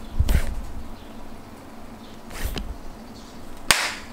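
Two brief whooshing noises about two seconds apart, then a single sharp hand clap near the end.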